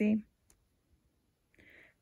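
A woman's voice finishes saying the letter "C", then it goes quiet but for a single faint click about half a second in as oracle cards are moved by hand, and a soft hiss just before speech resumes.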